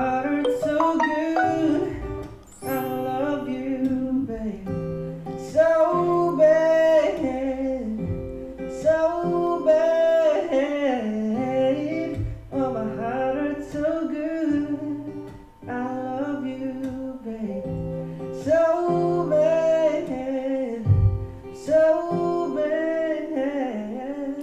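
A young man singing a song while playing an acoustic guitar.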